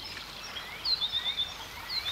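Songbirds chirping over a quiet outdoor background, with a quick run of repeated high notes about a second in and short rising chirps around it.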